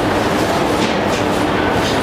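Audience applauding: a dense, steady clatter of many hands clapping that cuts off suddenly.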